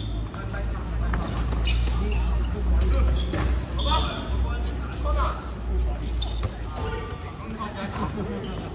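Dodgeballs being thrown and smacking onto a hard court and off players in a quick, irregular run of sharp hits, mixed with short shouts from the players. A steady low rumble runs underneath.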